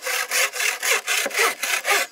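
Hand frame saw cutting through a thick bamboo pole: quick, even back-and-forth rasping strokes, about four a second.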